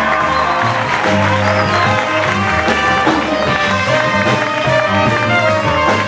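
Live small jazz combo playing: trumpet, saxophone and trombone sounding together over bass and drums, with steady cymbal strokes.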